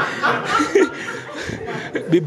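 People chuckling and laughing, with a few quieter spoken words mixed in.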